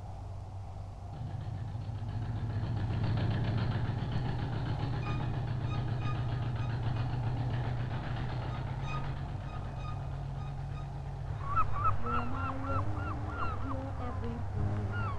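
A fishing boat's engine chugging with a steady, pulsing beat as the boat comes past, growing louder a second or two in. Near the end a gull gives a quick run of short calls that fall in pitch.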